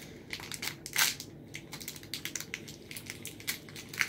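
Thin plastic toy wrapper crinkling and crackling as it is crumpled by hand, in quick irregular crackles with a louder crunch about a second in.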